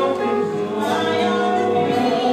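Live musical-theatre singing with keyboard accompaniment: sustained sung notes over a steady backing, as part of a stage duet.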